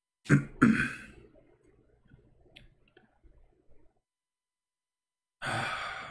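A man coughs twice sharply close to the microphone, then about five seconds in lets out a long, breathy sigh that fades away.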